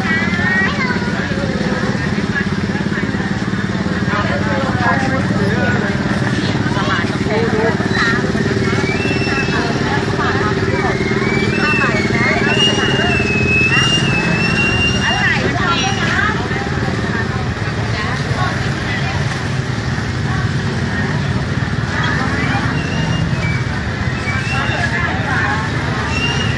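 Busy street-market ambience: a continuous mix of vendors' and shoppers' voices with motorcycles and scooters running past. A high wavering whine stands out for a few seconds around the middle.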